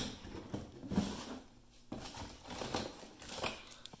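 A plastic drawer being pulled open and the items inside handled: faint scraping, light knocks and paper rustling.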